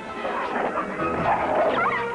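A dog barking and whining, with a high rising whine near the end, over background music.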